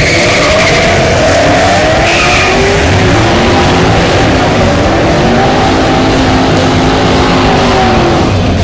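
Engines of two Ford Mustangs accelerating hard off the line on a drag strip, the engine note climbing in pitch and dropping back at each gear shift, with some tire squeal near the start.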